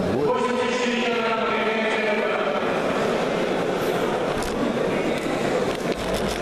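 Many voices chanting in long held notes, the pitch drifting slightly down over the first second or so.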